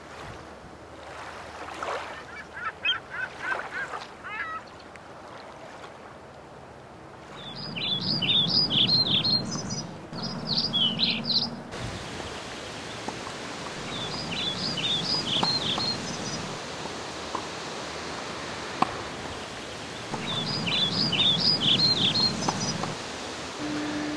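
A songbird singing outdoors: three phrases of quick falling chirps a few seconds apart, with fainter chirping early on, over steady outdoor background noise. One sharp click about two-thirds of the way through.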